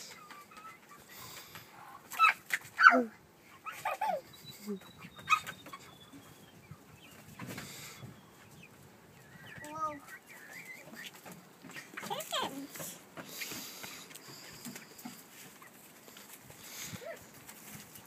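Domestic hens clucking now and then, with short bursts of a small child's voice and an adult's laugh between them.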